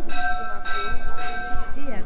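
A temple bell struck three times in quick succession, about half a second apart, each strike ringing on into the next.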